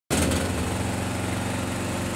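Portable generator's small engine running at a steady speed.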